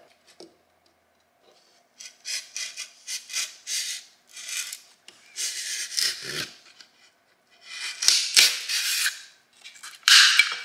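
Snap-off utility knife blade sawing through polystyrene moulding trim: a run of short scraping strokes that begins a couple of seconds in, one of them longer, with a couple of sharp clicks near the end.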